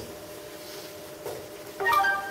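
A pause in a man's talk: quiet room tone with a faint steady hum, and a short burst of his voice near the end.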